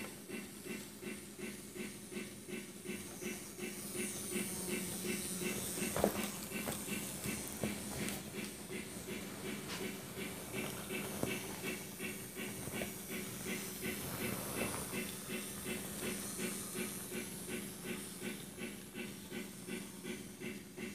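MRC Sound Station model-railway sound unit playing steam locomotive chuffing, an even beat of about three hissing chuffs a second over a steady hum, with a single sharp click about six seconds in.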